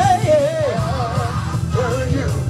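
A man singing a gospel worship song into a microphone, his voice sliding between notes, over steady instrumental accompaniment.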